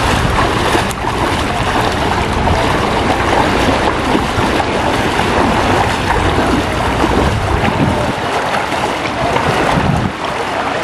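Wind buffeting the microphone over a steady wash of shallow surf, with the splashing of feet wading through knee-deep sea water.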